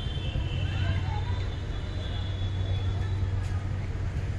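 Road traffic ambience: a steady low hum of vehicles running, with faint distant voices and a thin, steady high-pitched whine over it.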